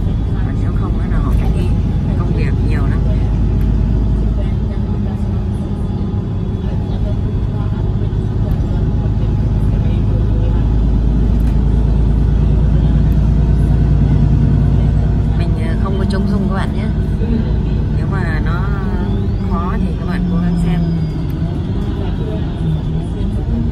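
City bus engine and running noise heard from inside the passenger cabin as the bus drives through town, a steady low drone that swells for a few seconds around the middle.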